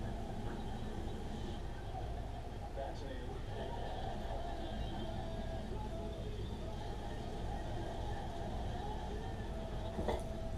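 Television playing in the background, faint muffled voices over a steady low hum.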